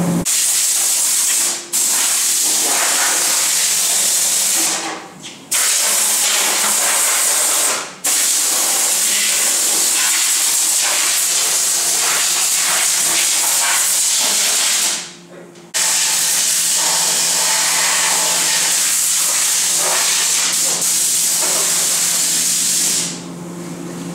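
Compressed-air gun on a shop air hose, hissing loudly in long blasts with short breaks as it is worked over the car's primed body and door panel.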